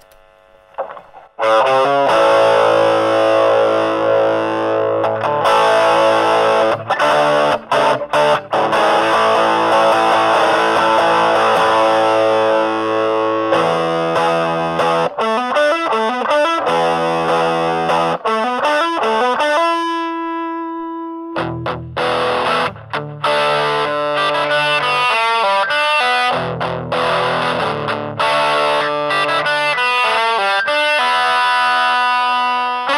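Electric guitar played through an Orange Micro Crush CR3 3-watt combo amp on its overdrive channel: distorted riffs and chords start about a second and a half in. About two-thirds of the way through, one note is held alone, then the fuller distorted playing resumes.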